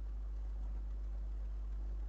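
Steady low hum with faint hiss: background room tone.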